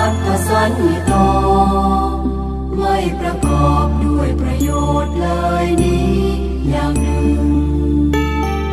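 Buddhist Pali sutta chanting set to instrumental music, with sustained bass notes that change every second or two beneath the melody.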